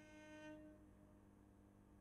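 A faint held note of bowed string music that ends about half a second in, then near silence with a low room hum.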